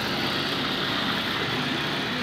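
Water pouring from a spout into a small pool, a steady splashing rush, with a faint low hum beneath it.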